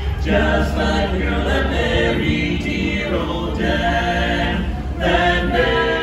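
Barbershop quartet of four men's voices singing a cappella in close harmony, holding chords that shift every second or so; a louder phrase starts about five seconds in.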